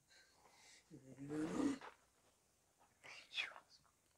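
A person's voice making two brief wordless sounds: a short pitched cry about a second in, then a quick breathy exclamation near the end.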